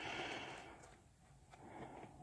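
A soft, breathy exhale lasting under a second, then near silence.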